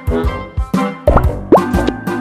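Upbeat background music with a steady beat. A little past a second in come two quick rising pops, a sound effect marking the slide transition.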